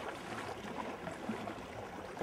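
Rushing, splashing water with an uneven, noisy texture.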